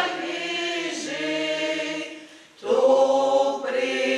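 A choir singing long held notes. The singing fades away briefly about two and a half seconds in, then comes back.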